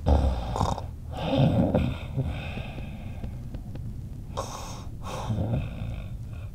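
A person stifling laughter: several breathy snorts and exhalations through the nose, bunched in the first two seconds, with two more near the end.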